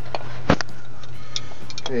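Jumper cable clamps being handled: a series of short metallic clicks and clacks, the loudest about half a second in, over a steady low hum.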